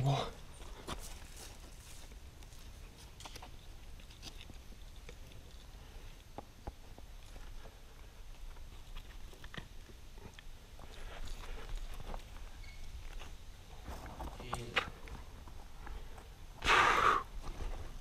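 A rock climber breathing hard while straining on a sandstone route, with scattered light taps and scrapes of hands, shoes and gear on the rock. A loud grunt comes near the end.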